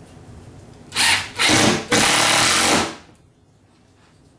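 Cordless drill driving a screw into cement board over plywood, in three bursts: two short ones about a second in, then a longer run of about a second that stops sharply near the three-second mark.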